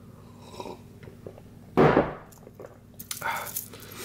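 A sip of coffee: one short, loud slurp about halfway through, then a softer noise about a second later.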